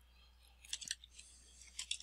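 Computer keyboard keys tapped as a word is typed: faint, quick keystrokes in two short runs, one a little before the middle and another near the end.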